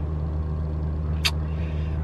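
Steady low hum inside a stationary car, with a single sharp click about a second in.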